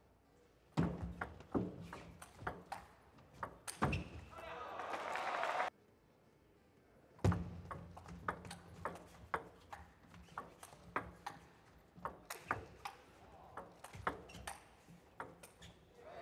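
Table tennis rallies: the celluloid ball clicking sharply back and forth off rackets and table in quick succession, in two rallies. After the first rally a rising burst of crowd noise cuts off suddenly.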